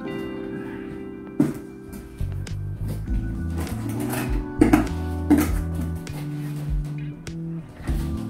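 Background music with a stepping bass line and a few sharp hits, the loudest about halfway through.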